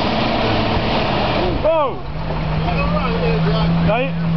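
A Simca Marmon SUMB truck's 4.2-litre V8 running while the truck is stuck in a muddy pond. A short burst of noise comes just before halfway, and then the engine settles into a steady drone, with voices in the background.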